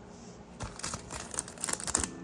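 Foil wrapper of a sealed basketball trading-card pack crinkling as gloved hands pick it up and handle it. It starts about half a second in as a run of irregular crackles.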